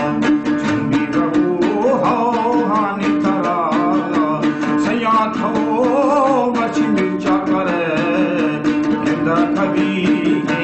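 A song: a voice singing a wavering, bending melodic line over plucked-string accompaniment with a steady held drone note and a quick, regular beat.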